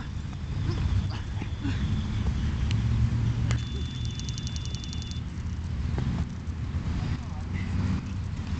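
Low rumble of wind buffeting an outdoor camera microphone, with scattered faint knocks. About three and a half seconds in, a brief high steady tone with a fast ticking lasts under two seconds.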